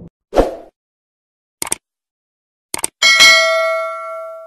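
Subscribe-button animation sound effects: a short thump, two mouse clicks, then a bell ding that rings on and fades away over about a second and a half.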